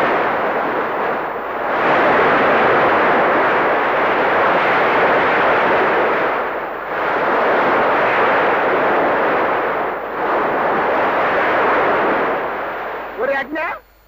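Steady roar of rushing white water from a waterfall, swelling and easing a few times. A brief voice is heard near the end.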